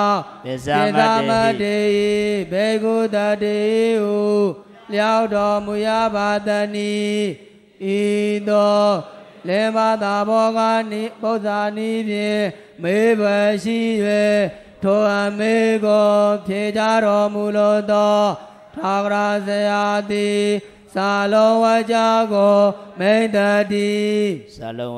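A Buddhist monk's voice chanting Pali scripture into a microphone, intoned on one steady held pitch with small melodic turns, in phrases of about two seconds separated by short breaths.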